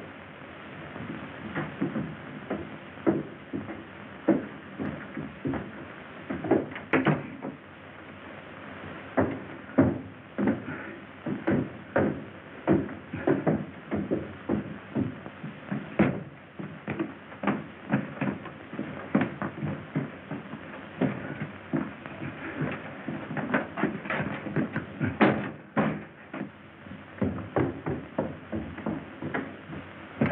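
Irregular knocks and thumps, one or two a second, as of footsteps and objects being moved on wooden floors and stairs. They sit over the steady hiss and hum of an old optical film soundtrack.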